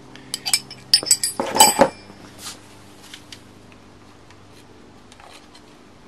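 Steel hand tools clinking and clattering for about two seconds as they are handled and set down, some strikes ringing briefly; after that only a faint steady hum remains.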